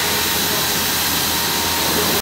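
Fiber laser cutting machine cutting holes in a carbon steel sheet: a steady rushing hiss with a faint high whine.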